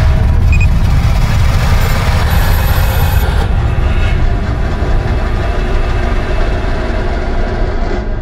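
Sound-design rumble under a 3D title animation: a loud, deep, noisy rumble that holds throughout and eases off slightly, with a thin high whine for about a second, two to three seconds in.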